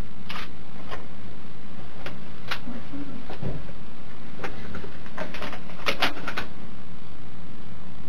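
A scattered series of sharp clicks and light knocks over the steady hum and hiss of a room recording. The clicks come closer together in a quick run from about four and a half to six and a half seconds in, with a dull thump a little before that.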